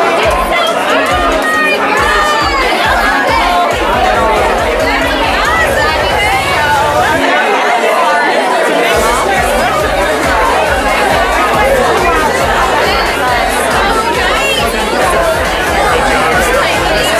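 Crowd chatter: many people talking at once in a packed room, no single voice standing out.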